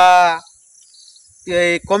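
A steady, high-pitched insect chorus in the background. Over it a man's voice holds a word at the start, breaks off about half a second in, and starts talking again near the end.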